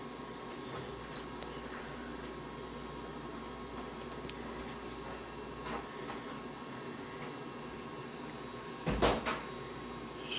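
Steady low room hum and hiss with a few faint ticks, broken about nine seconds in by a short, louder bump.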